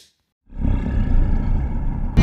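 Logo-sting sound effect: after a brief silence, a low, loud rumble starts about half a second in and holds steady.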